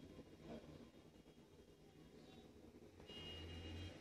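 Near silence: faint room tone, with a low hum coming in near the end.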